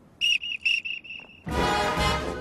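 A drum major's whistle blows a quick series of short, high-pitched blasts, the last one longer and fading, signalling the marching band to start. About a second and a half in, the band's brass comes in loudly.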